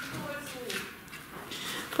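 Faint background talk, with a couple of light knocks.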